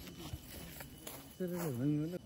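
A person's voice making one drawn-out wordless sound that dips and then rises in pitch near the end, over a low-level outdoor background.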